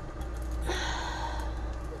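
A woman's breathy sigh of exasperation about a second in, over a steady low hum.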